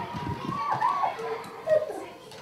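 Children's high-pitched voices calling out over one another, with no clear words.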